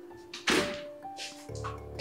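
A house's front door shutting with a single loud thunk about half a second in, over background music of sustained tones; a low drone joins the music near the end.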